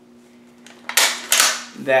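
Bolt of a Finnish M39 Mosin-Nagant rifle being worked open, lifted and drawn back. A sharp metallic click and two loud rasps, about a second in and lasting under a second.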